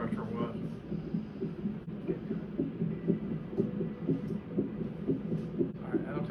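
Fetal heart monitor's Doppler speaker playing the unborn baby's heartbeat as a quick, even, whooshing pulse.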